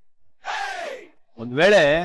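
A breathy, gasp-like exclamation that falls in pitch, followed about a second in by a short voiced sound from a man, a brief non-word utterance rather than a sentence.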